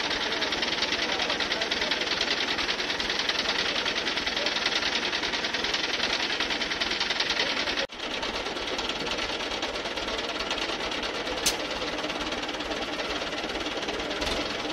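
A heavy machine's engine running steadily with a fast, even clatter. There is an abrupt break about eight seconds in, after which it goes on a little quieter, with a single sharp click a few seconds later.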